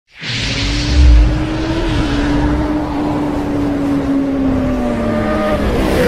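Engine sound effect in a logo intro: a loud, steady engine note that drifts slowly down in pitch, with a heavy low boom about a second in.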